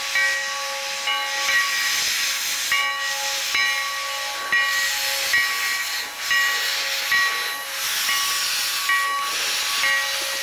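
Sierra Railway No. 3, a 4-6-0 steam locomotive, hissing steam as it moves slowly past, with a beat a little more than once a second. Each beat carries a short high tone over the steady hiss.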